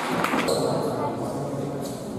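Indistinct chatter of spectators talking in an echoing hall, with one short click near the end.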